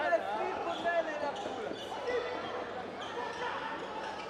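Handball bouncing on a wooden sports-hall court, a few sharp knocks, amid players calling out, echoing in the large hall.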